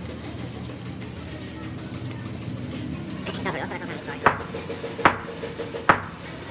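Three sharp knocks about a second apart in the second half, over a steady low background.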